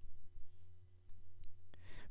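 A lull between words: a low steady hum with a faint steady tone over it, which stops just before one short click near the end.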